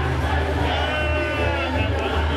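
Loud club dance music with a heavy bass, and a high, wavering voice held for about a second over it.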